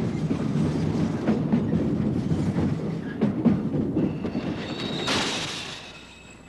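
Freight cars rolling down a rail yard hump by gravity, with steel wheels rumbling and clacking over switches and joints. From about four seconds in, a high-pitched wheel squeal rises to a loud peak a second later.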